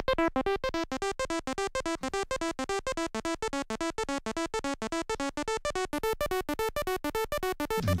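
Groovesizer mk1 DIY 8-bit granular synth, an Auduino engine driven by its 16-step sequencer, looping a fast pattern of short buzzy notes, about eight a second, with the pitch stepping up and down. Its tone shifts as the tone knobs are turned, and it grows brighter in the later seconds.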